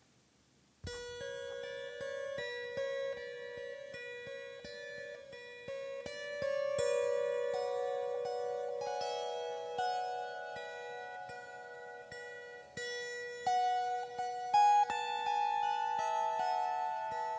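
Sérénité Sonore Crescent Moon Lyre, a small crescent-framed lyre, plucked in a slow improvisation. After about a second of near silence the first notes ring out, overlapping, with one low note kept ringing and re-plucked under changing higher notes.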